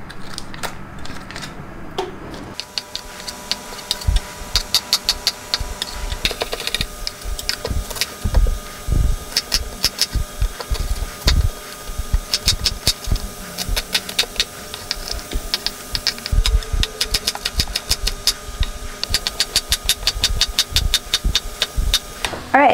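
Chef's knife chopping vegetables on a wooden cutting board: runs of quick knife strikes on the board, some heavier thuds among them, over a faint steady hum.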